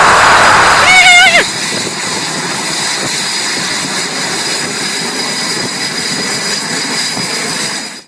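A loud burst of noise in the first second and a half, with a short wavering cry near its end, then steady jet engine noise with a thin high whine.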